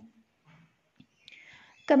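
A short pause in a lecturer's speech: mostly quiet, with a faint click about halfway and a soft breathy hiss just before her voice resumes near the end.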